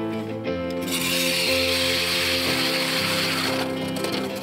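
Instrumental background music, with an ice auger drilling into the ice laid over it: a grinding hiss that begins about a second in and stops shortly before the end.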